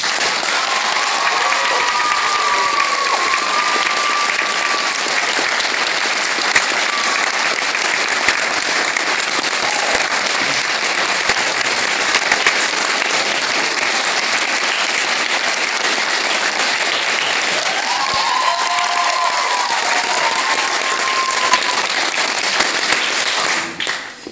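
Audience applause, loud and steady, following the end of a sung piece with piano; it cuts off abruptly just before the end.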